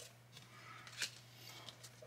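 Very quiet handling of a small stack of trading cards: a few faint soft clicks, the clearest about a second in, over a low steady hum.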